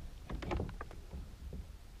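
A quick cluster of knocks and rattles in the first second, the sounds of a kayak and its fishing gear being handled while a fish is brought in on the line.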